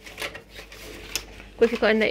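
Light clicks and rustling of plastic pass cards, a lanyard clip and paper being handled, with one sharper click about a second in.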